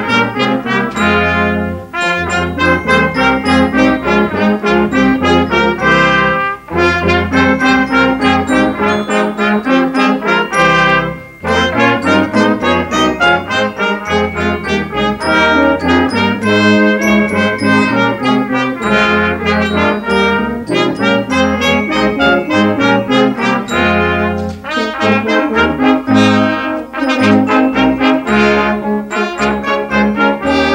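A high school brass choir of trumpets, tubas and other brass playing a piece together, in phrases broken by brief pauses, the longest about eleven seconds in.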